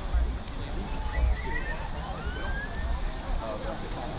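Distant, unintelligible voices of players and spectators calling out across an open sports field, one call rising in pitch midway, with wind buffeting the microphone in low rumbles near the start and about a second in.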